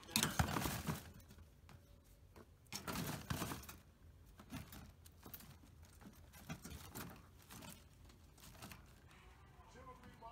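Rustling and light rattling as a pet rabbit moves about its wire cage. There are two short bursts, one right at the start and one about three seconds in, and scattered small clicks after them.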